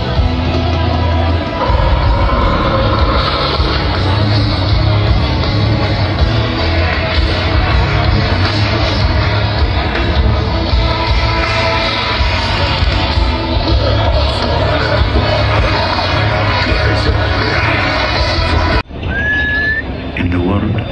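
A heavy metal band playing live over a festival PA, heard from inside the crowd with heavy bass and some singing, loud and distorted. It cuts off suddenly about a second before the end.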